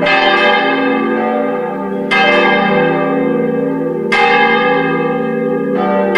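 Church bells ringing, with a fresh strike about every two seconds; each stroke rings on under the next.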